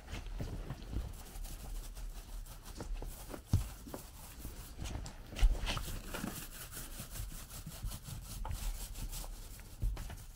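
Paint roller spreading thick liquid waterproofing membrane (Laticrete Hydro Ban XP) over a mortar shower floor: an irregular soft rubbing with small ticks as the roller is pushed back and forth. Two low thumps stand out, about a third of the way and halfway through.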